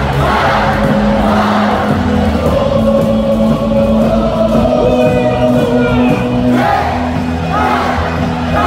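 A baseball stadium crowd singing a team cheer song in unison over amplified music. A held, sustained stretch in the middle gives way to rhythmic chanting again near the end.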